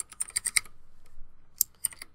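Typing on a computer keyboard: a quick run of keystrokes in the first half-second, then a couple more near the end.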